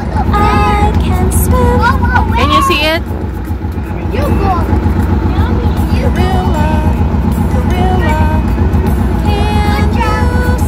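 The engine of a caged safari vehicle running with a steady low rumble, heard from inside the cage, under children's sing-along music and voices.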